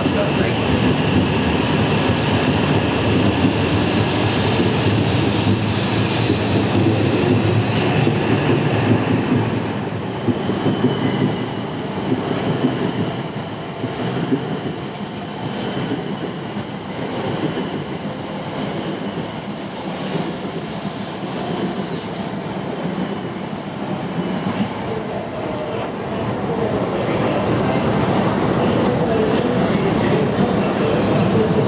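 Coupled E6 and E5 series Shinkansen train pulling out at low speed, its wheels and running gear rumbling steadily over the tracks as the cars roll by. The sound eases off around the middle and builds up again near the end.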